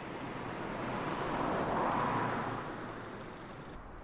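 A rush of road traffic noise that swells to a peak about two seconds in and then fades away, like a car going by, dropping off just before the end.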